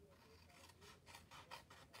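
Faint snips of small paper scissors cutting into scored cardstock, a few short cuts in the second half.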